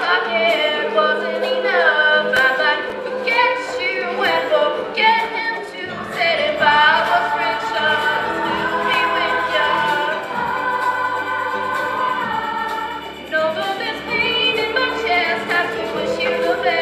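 A girls' choir singing a pop song in parts, with a soloist at a microphone over the group.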